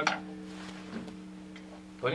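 A pause after drumming: a steady low hum with a faint tick about a second in, after a short sharp sound right at the start.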